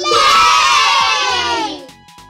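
A group of children cheering "yay!" together, a short celebratory sound effect that starts suddenly, drifts down in pitch and fades out after about two seconds.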